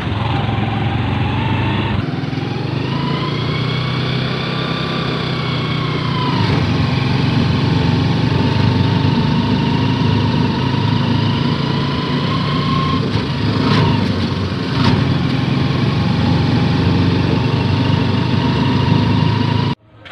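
Motorcycle engine of a tricycle (motorcycle with sidecar) running while the tricycle is underway, heard from the sidecar. A whine rises and falls as the engine speeds up and eases off, with a couple of brief knocks about three-quarters of the way through. The sound cuts off abruptly just before the end.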